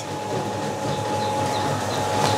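Feed-mill machinery running steadily: an even mechanical running noise with one constant high hum.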